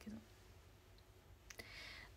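Near silence: room tone with a couple of faint clicks, about a second and a second and a half in, and a soft hiss near the end.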